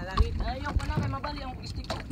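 Indistinct talking from people nearby, with wind buffeting the microphone in low thuds.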